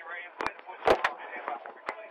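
A few sharp knocks and clicks at irregular intervals, a close pair about half a second in and the loudest about a second in, with faint voices in between.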